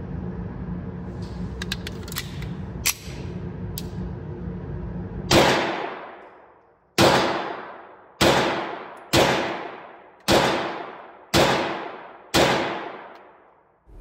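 Seven shots from a Sig Sauer P938 subcompact 9mm pistol firing 150-grain loads, about a second apart, each dying away in the echo of an indoor firing range. Before the first shot there is a steady low hum with a few faint clicks.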